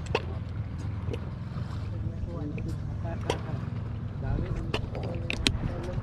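Low, steady hum of a boat engine, with scattered short knocks and clicks.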